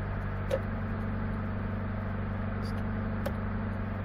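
A 1989 Honda CRX Si's four-cylinder engine idling steadily, heard from inside the cabin. A few faint, irregular clicks come from the replacement flasher relay, which keeps clicking after the turn signal has been switched off. This is a known quirk of the LED-compatible relay.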